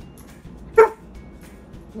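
A German Shepherd gives a single bark about a second in, barking on the command to speak for a treat.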